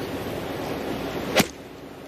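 A gap wedge striking a golf ball once, about one and a half seconds in: a single sharp click of the clubface on the ball, over a steady low hiss of outdoor background noise.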